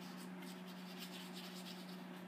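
Paintbrush brushing across a painting surface: a string of short, faint scratchy strokes, over a steady low hum.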